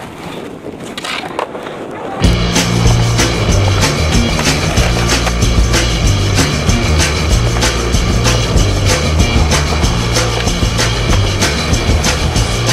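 Skateboard wheels rolling on concrete for about two seconds, then loud music with heavy bass and a steady drum beat comes in suddenly and carries on.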